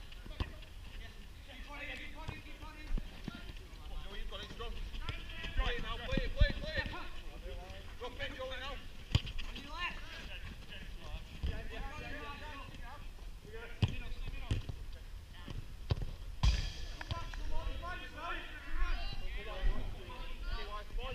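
Indistinct shouts and calls from players across a five-a-side football pitch, with several sharp thuds of the ball being kicked; the loudest knock comes late on.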